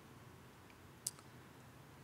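Near silence: faint room tone, with one short sharp click about halfway through.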